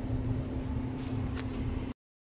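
Steady low hum with a faint constant tone, with a couple of faint ticks. The sound cuts off abruptly just before the end.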